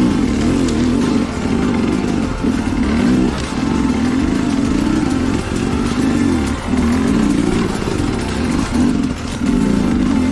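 Sherco dirt bike engine revving up and down in short, repeated bursts of throttle, its pitch rising and falling, as the bike crawls over rocks.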